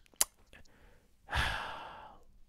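A short click, then, a little over a second in, a man's long, breathy sigh into the microphone that fades away.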